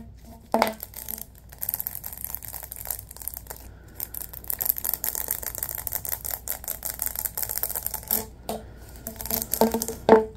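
Latex-gloved hands rubbing and sliding along a ribbed, corrugated plastic tube: a dense run of fast ticking and scratching as the fingers run over the ribs, with a sharp click just after the start and a few louder clicks near the end.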